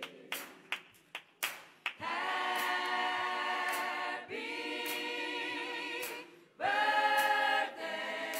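Church choir and congregation singing a birthday song in long, drawn-out held notes, after a few hand claps in the first two seconds.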